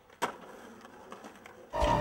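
A single sharp clack of a skateboard hitting asphalt about a quarter second in, followed by faint hiss. Music with a steady beat starts near the end.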